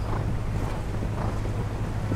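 Wind rumbling on the microphone, with faint soft beats a little under twice a second from a horse's hooves cantering on the sand arena.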